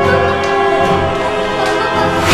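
Background score of held, choir-like notes sustained at a steady pitch, with a few faint light ticks over it.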